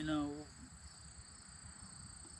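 Crickets chirring steadily in a continuous high-pitched drone, with a short falling vocal sound from a man right at the start.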